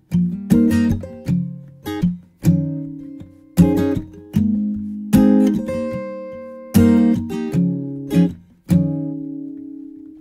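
Solo acoustic guitar strumming chords, each strum left to ring out and fade before the next, as the song's instrumental intro.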